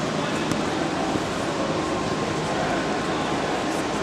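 Steady background din of a large indoor hall: many distant voices blurred together with a continuous hum, without clear words or sharp knocks.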